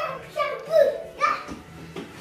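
A toddler's voice: a few short, high-pitched babbling calls.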